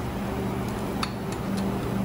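Faint metallic clicks and clinks of a brass hose fitting being threaded by hand onto the paint pump's fluid outlet, one sharper click about a second in, over a steady low hum.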